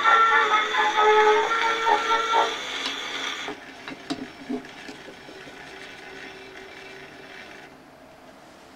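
1909 Edison Fireside Model A phonograph playing the last notes of a Blue Amberol cylinder through its horn, the music ending about two seconds in, followed by the cylinder's surface hiss. About a second later the hiss drops, and a few clicks follow as the machine is handled. A faint run of the mechanism continues until it stops near the end.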